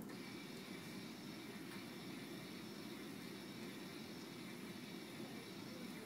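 Benchtop conveyor belt running steadily, a faint even hum with a thin high whine from its drive motor as it carries a tin can along the belt.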